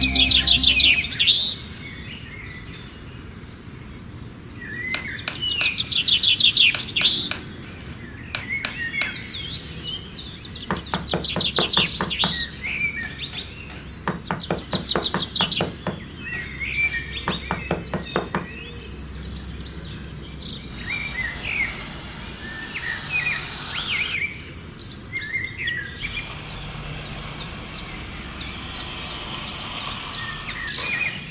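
Birds chirping and trilling over and over. In the second half a small trowel scrapes and digs into fine sand, giving a gritty hiss.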